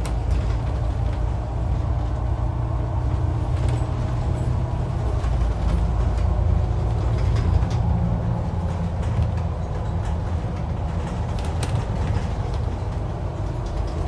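Cabin noise inside a moving bus: a steady low rumble of engine and road, with a few light clicks and rattles.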